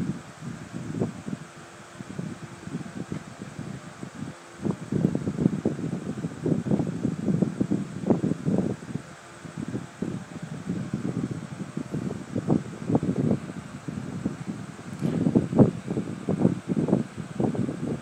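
Irregular soft, muffled taps and rustle, in the rhythm of fingers typing on a phone's touchscreen close to its microphone, over a steady background hiss.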